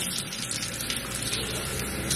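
Water running steadily from a tap into a large insulated tumbler as it is refilled.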